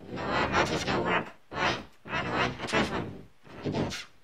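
A person's voice in several short phrases with brief pauses, stopping abruptly at the end.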